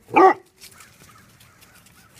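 Basset hound giving one short bark near the start.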